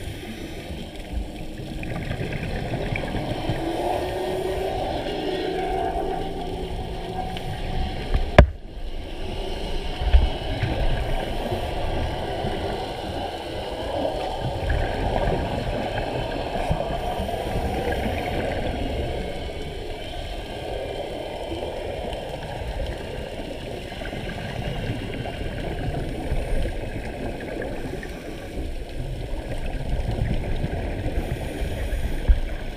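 Muffled underwater rumble heard through a GoPro camera held beneath the surface, steady and low. A single sharp knock comes about eight seconds in.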